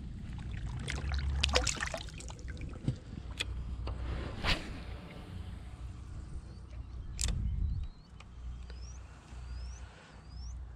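Low rumble of wind and handling on a head-mounted camera's microphone, with knocks and clicks from handling a fish and a light spinning rod. A sharp swish comes about seven seconds in as the rod is cast, and a run of short rising chirps follows near the end.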